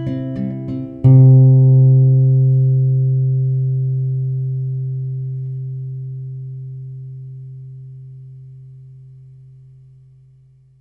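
Acoustic guitar ending the song: a few last plucked notes, then a final low note struck about a second in and left to ring out, fading slowly.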